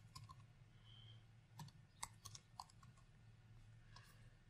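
Faint, sparse clicks of computer keyboard keys being typed, a handful of separate keystrokes over a faint low room hum.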